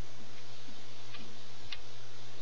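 A couple of small clicks from rubber bands being worked on a Rainbow Loom's plastic pegs, the louder one near the end, over a steady hiss and low hum.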